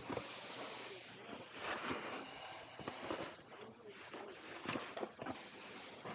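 A person walking with a handheld camera: soft, irregular footsteps and clothing rustle over quiet office room noise.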